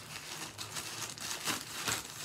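Shipping packaging being cut open by hand, crinkling and rustling, with a couple of sharper crackles near the end.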